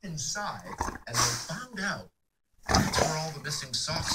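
Labrador–pit bull mix dog growling with a bone clenched in his mouth while a man talks over him; the sound cuts out for about half a second midway.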